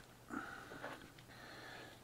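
Quiet room tone with a brief, soft breath through the nose about a third of a second in.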